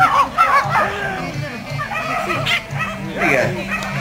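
A 3½-month-old mudi puppy barking in a series of short, high yaps, over-excited while working sheep, with crowd chatter behind.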